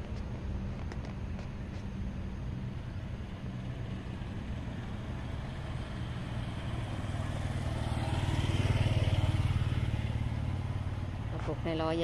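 A motor vehicle's engine running as a low steady hum, growing louder about eight seconds in and easing off again near the end, like a vehicle passing by.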